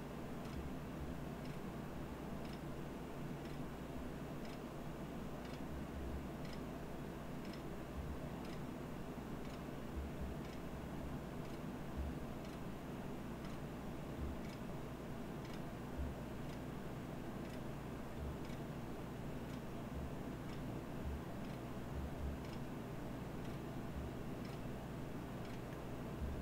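Faint footsteps on a carpeted floor: soft, unevenly spaced thuds and light ticks over a steady low room hum.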